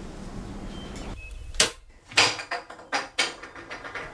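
A handful of sharp clicks and knocks in the second half, about five in under two seconds, over quiet room tone.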